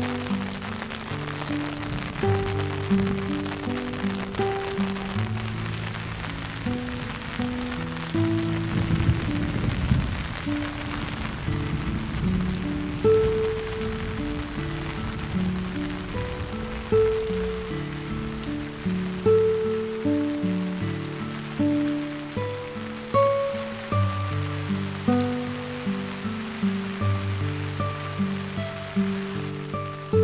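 Steady rain falling on garden foliage, with slow instrumental background music playing over it.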